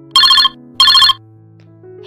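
A telephone rings as a sound effect, two short bursts of a warbling electronic ring, over soft background music with sustained notes.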